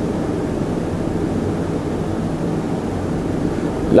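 Steady low background rumble with no speech.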